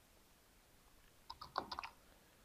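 Faint computer keyboard keystrokes: a quick run of about half a dozen key taps starting a little over a second in, typing out a word.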